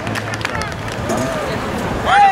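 Indistinct voices of several people calling and chattering around a youth football field. A few sharp clicks come in the first half second over a steady low hum.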